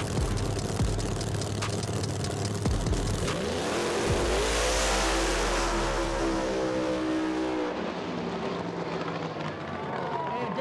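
Drag race car engines crackling and loping on the line, then a launch about three seconds in: the engine note rises sharply, holds at full power as the car runs down the track, and fades away near the end.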